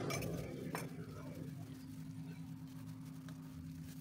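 Faint, scattered clinks and light scraping of a stone pestle on a ceramic plate as peanut sauce is ground, over a steady low hum.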